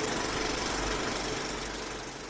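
Film projector running: a fast, steady mechanical clatter with hiss.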